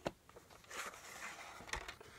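Handling a VHS tape and its plastic case to take the cassette out: a click at the start, soft plastic rustling, and another click near the end.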